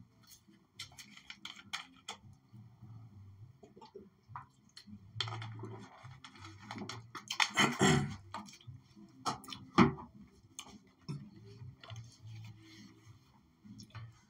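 A man drinking water close to the microphone: faint swallows and gulps among scattered small clicks and knocks. The louder sounds come about halfway through and again near ten seconds in.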